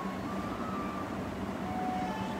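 A steady low mechanical hum over a faint background noise, with a few brief faint high tones.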